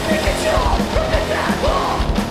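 Rock band playing live on electric guitar, bass and a Roland drum kit, with yelled lead vocals that come in right at the start.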